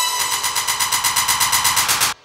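Electronic dance music from a DJ set: a rapid, evenly repeated percussive roll at a steady loud level, typical of the build-up before a drop.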